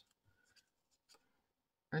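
Faint rustle of fingers handling coloring-book paper pages, with a soft click about a second in.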